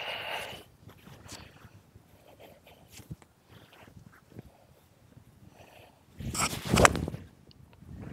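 A golf iron swung through and striking the ball off the tee: a brief swish, then a sharp contact about seven seconds in. The rest is faint outdoor background with small scuffs.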